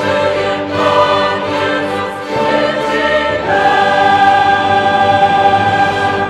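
Mixed choir and string orchestra performing a Christmas carol, closing on one long held chord from about halfway through that is released at the very end.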